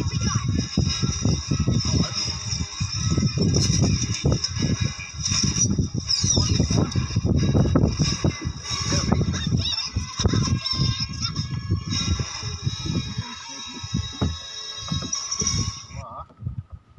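A movie's soundtrack playing in the background: voices and music, cutting off suddenly at the end.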